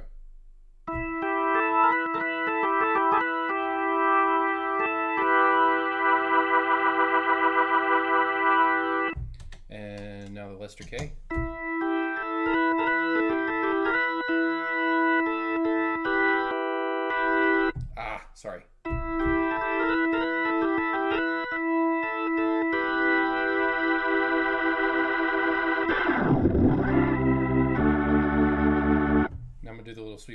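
Nord Electro 5D organ played through an Electro-Harmonix Lester K rotary speaker pedal: sustained organ chords with a swirling rotary wobble, in phrases broken by short pauses, with low chords near the end.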